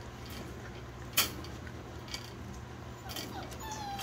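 Young puppies mouthing and chewing on a person's fingers, with soft low-level rustling, a sharp click about a second in and a faint thin whine near the end.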